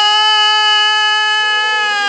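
A man's voice holding one long, high sung note in qasida singing. It slides up into the note and then stays steady. A fainter, lower tone joins about a second in.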